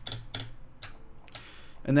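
Clicks from working a computer mouse and keyboard: a few quick clicks in the first half second, then one more about a second in.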